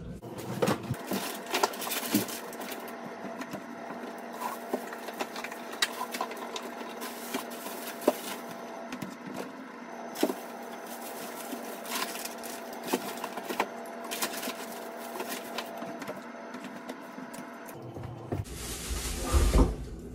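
Groceries being put away into a freezer: frequent small knocks, clicks and rustles of packages over a steady hum. A louder rush of noise comes near the end.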